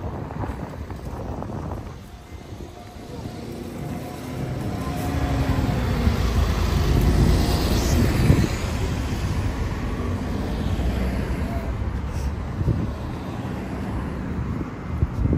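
A car driving past close by on the street, its low rumble swelling and easing off around the middle, over general traffic noise and wind on the microphone.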